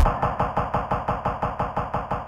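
Korg Volca Sample sampler playing one short sample retriggered in a fast, even stutter of about seven hits a second, as part of an electronic jam.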